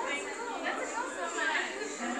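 Women's voices in lively chatter, talking over one another, with a higher excited voice rising near the middle; the sound is thin, lacking low bass.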